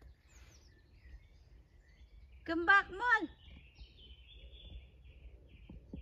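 A high-pitched voice calls out once, two drawn-out arching syllables, about two and a half seconds in, over faint birdsong in the background.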